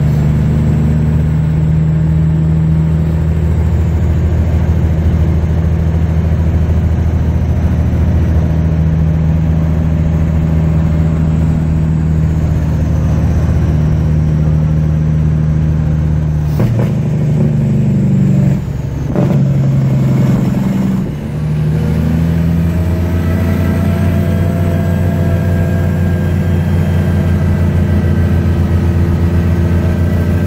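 1977 Peterbilt 359's diesel engine pulling the truck along, heard from inside the cab. Midway through, the engine note changes and drops out briefly twice as the driver shifts gears, then it settles into a new steady pitch.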